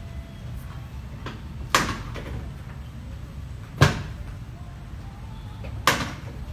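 Three sharp clunks about two seconds apart from a padded treatment table as the practitioner thrusts down on a patient's lower back, over a low steady hum.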